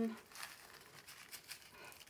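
Small plastic zip bags of diamond painting drills crinkling faintly as they are picked up and shuffled by hand, in quick irregular rustles.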